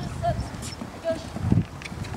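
Horses cantering on a sand arena: muffled hoofbeats, with a heavier thud about one and a half seconds in.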